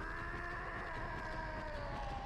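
A single long held tone from the anime's soundtrack, sagging slightly in pitch as it goes on, heard faintly under the room.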